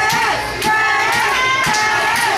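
High-pitched children's voices yelling from the crowd in drawn-out, sing-song calls.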